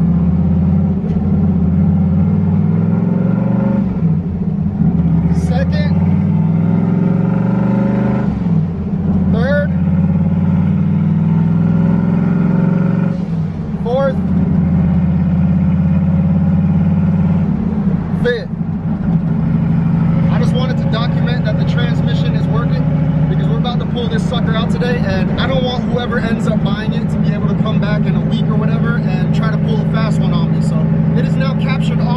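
Turbocharged Fox-body Ford Mustang's engine running, heard from inside the cabin while driving, with short dips in level about every four to five seconds.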